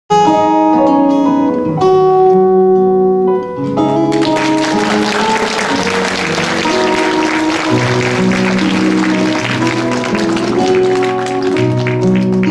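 Live band playing the opening of a song, led by sustained keyboard chords. Audience applause breaks out about four seconds in and carries on over the music.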